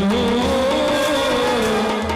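Live Indian band music over a PA: a single melody line held and wavering in pitch, with a low steady bass underneath.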